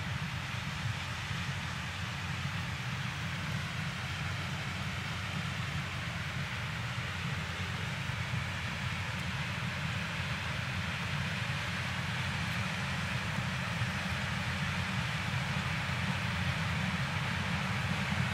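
New Holland CX combine harvester with a Geringhoff corn header running while harvesting maize: a steady mechanical drone that grows slowly louder as the machine comes closer.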